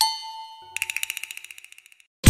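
TV programme ident sound effect: a bright chime struck once and ringing away, then a fast run of ticking pulses, about a dozen a second, that fades out.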